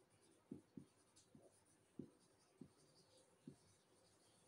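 Marker pen writing on a whiteboard: about six faint, short strokes as words are written out.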